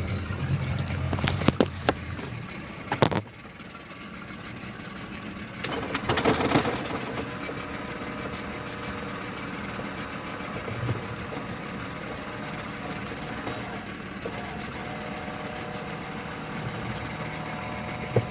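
Boat engine idling with a few sharp clicks, then shut down or throttled right back about three seconds in. A quieter steady hum follows, with a brief louder rush about six seconds in.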